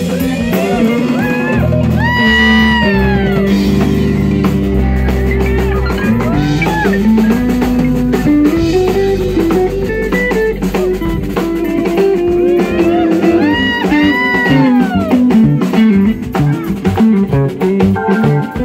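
Live blues-rock band playing an instrumental passage: electric guitar lead with notes bent up and let back down, over bass guitar, drum kit and keyboard.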